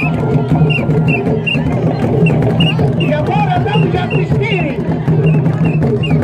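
Traditional dance song: voices singing over a steady drum rhythm.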